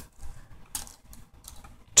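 Faint, irregular light clicks of plastic as fingers tap and handle a 6x6 V-Cube puzzle cube, a few small clicks spread across two seconds.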